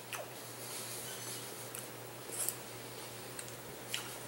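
A few faint, sharp clicks of a metal fork against a small dish, with quiet chewing of a mouthful of beef, over a low steady hum.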